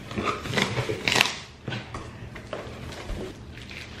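Rustling and crinkling of paper and plastic packaging being handled inside a cardboard box, in irregular bursts, the loudest about a second in, then quieter.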